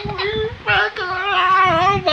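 A toddler's long, high, wavering squeal of laughter, drawn out with a brief break about half a second in.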